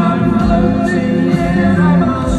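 Live rock band playing, with a lead vocal sung over drums and electric guitars.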